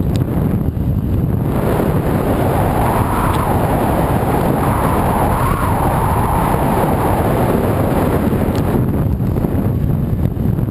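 Wind rushing over the microphone of a camera moving at speed along a paved path. Through the middle a louder, hissing rush swells up and then fades near the end.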